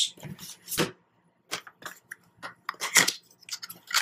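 Cardboard packaging being handled: a string of short scrapes, taps and rustles as an inner white card box is lifted out of a product box, with a louder scrape about three seconds in.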